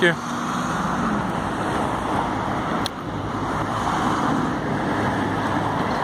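Road traffic on a city street: cars driving past, a steady rush of tyres and engine noise.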